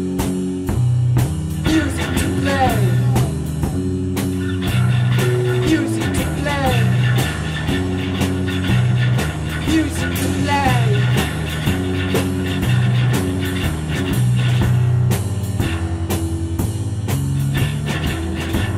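Instrumental rock jam from a live improvising band: drum kit keeping a steady beat under sustained low notes that change about every second, with falling, gliding guitar notes sounding every few seconds.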